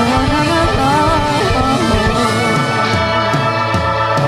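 Live rock band playing: electric guitar and keyboards over bass and drums, with cymbal crashes near the end.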